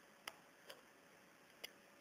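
Near silence with three faint, short clicks spread across two seconds.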